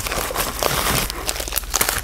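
A padded mailing envelope being torn open and the package pulled out: a continuous ripping noise for about the first second, then crinkling and rustling of wrapping.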